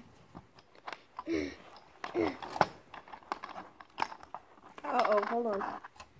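Plastic Connect 4 checkers clicking and clattering as they are handled in and around the grid and tray: a string of short, irregular clicks, with a few brief bits of voice between them.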